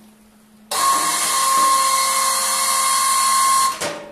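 Electric hydraulic pump motor of an ATV snowplow running with a steady high whine. It starts just under a second in and cuts off suddenly near the end, as the plow is raised or lowered.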